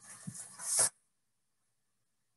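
A short, breathy noise close to the microphone that grows louder and cuts off suddenly just under a second in.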